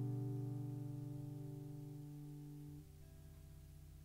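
Final chord of an acoustic-guitar-led song accompaniment ringing out and slowly fading away. Part of the chord drops away nearly three seconds in, leaving a faint tail.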